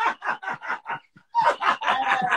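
Hearty, cackling laughter from two people, in quick pulses. It breaks off briefly about a second in, then bursts out again.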